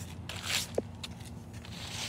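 Vinegar poured from a plastic cup onto dried baking-soda chalk paint on concrete: a brief splash about half a second in, then a soft hiss near the end as the paint foams and fizzes.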